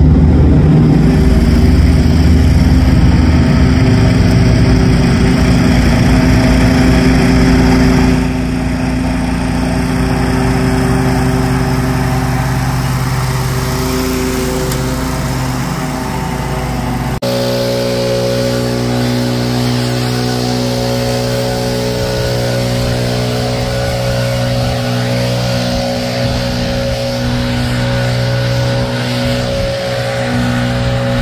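Toro Grandstand stand-on mower's small engine running steadily while mowing. About 17 s in the sound cuts abruptly to another steady small-engine drone.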